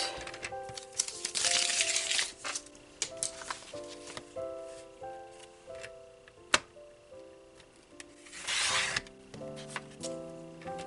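Gentle melodic background music. Under it, paper and a sliding paper trimmer make two brief rasping swishes, one about a second in and one near the end, with a few sharp clicks.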